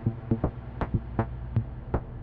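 Eurorack modular synthesizer playing a sparse sequenced pattern: a steady low drone under short pitched percussive blips, about seven of them at uneven spacing.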